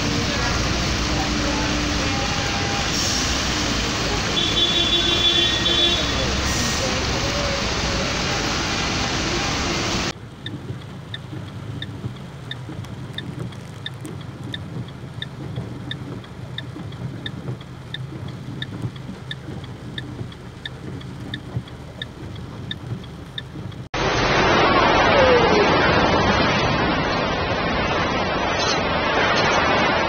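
Flooded city street: cars driving through deep water with loud traffic and water noise for the first ten seconds. Then a quieter stretch with a steady ticking, about three ticks every two seconds. Then, from about four seconds before the end, loud rushing floodwater.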